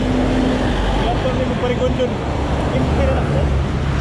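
Wind buffeting a handlebar-mounted GoPro's microphone while riding a bicycle on a road, mixed with the steady noise of road traffic.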